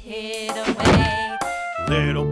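Children's song instrumental music with sustained notes, broken by two thuds, the louder one a little under a second in.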